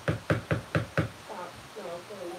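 A stick blender tapped repeatedly against the rim of a plastic bucket of soap batter, about four sharp knocks a second, stopping about a second in. Then a cat begins meowing faintly.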